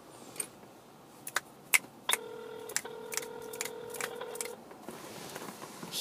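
Smartphone calling out: a few sharp clicks from the handset as the number is dialed, then a steady electronic call tone over the phone's speaker, lasting about two and a half seconds with a brief break just after it starts.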